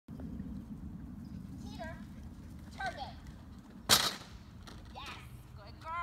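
Agility teeter board banging down onto the ground once, sharply, about four seconds in, as the dog rides it over the pivot.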